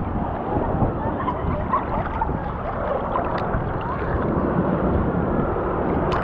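Sea water sloshing around a camera held at the surface, with steady wind rumble on the microphone.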